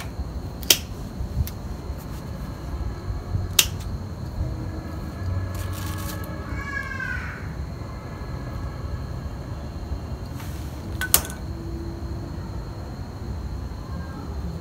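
Gloved hand and a hand tool scraping and loosening soil from the roots of a ficus bonsai, a low scratchy noise, broken by three sharp clicks. A short squeaky call sounds about seven seconds in.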